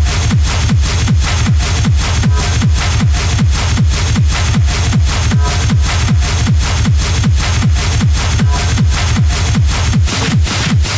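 Hard techno (schranz) mixed by a DJ: a fast, steady four-on-the-floor kick drum, each kick dropping in pitch, with sharp percussion hits on every beat.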